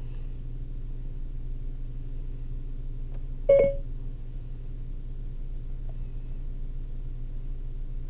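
A single short electronic beep about three and a half seconds in: the Siri activation tone played through the Ford Sync car audio system after the iPhone's home button is held. A steady low hum runs underneath.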